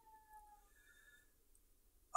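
Near silence: faint room tone, with a faint thin whine in the first second.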